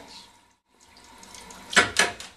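Cold tap water running into a stainless steel sink over a thermoplastic dental tray held in the stream, cooling the tray so it sets. A brief, loud burst of noise comes near the end.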